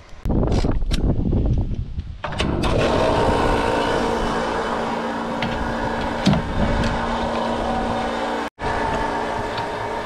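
Fuel running from a pump nozzle into a New Holland TL100A tractor's fuel tank, over the steady hum of the fuel pump. A rough low rumble comes before it in the first two seconds.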